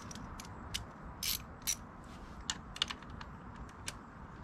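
Irregular sharp clicks and clinks from hand tools and parts being handled during motorcycle rearset fitting, with a short scraping burst a little over a second in and a pair of quick clicks near three seconds, over a steady faint hiss.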